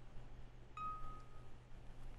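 A single bright chime about three-quarters of a second in: one clear tone that rings out and fades within about a second, over a faint steady hum.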